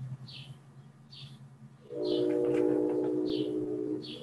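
Short high chirps repeat about once a second over a low steady hum. About halfway through, a louder steady tone with several pitches starts and is held.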